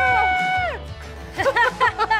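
A person's long held scream of fright cuts off just under a second in. After a short pause, bursts of laughter begin near the end, over background music.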